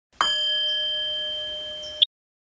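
A single struck bell-like metal tone: one sharp strike, then a clear ring of a few steady pitches fading slowly for nearly two seconds before it is cut off abruptly.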